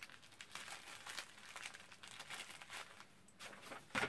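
Faint, irregular crinkling and rustling of packaging as an item is taken out of a box and unwrapped by hand.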